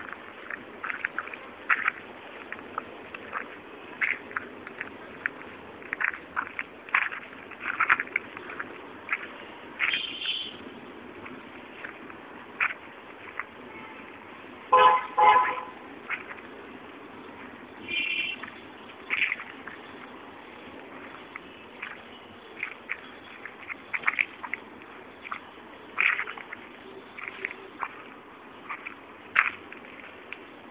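Outdoor street ambience: a steady low hum of distant traffic, with small birds chirping in short, scattered calls. A vehicle horn toots twice about halfway through, the loudest sound.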